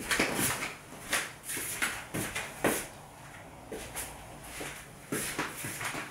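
Scattered light knocks and clunks of kitchen handling as the baked loaf is fetched from the oven, with a quieter stretch in the middle.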